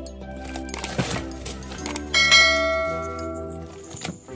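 Background music with a short swish about a second in, then a bright bell-like ding that starts just after two seconds and rings out for about a second and a half: the notification-bell sound effect of a subscribe-button animation.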